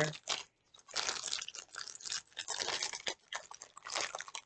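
Packaging being handled, crinkling and rustling in a string of irregular bursts.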